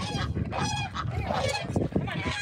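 Domestic geese honking, several calls in quick succession, with wind rumbling on the microphone.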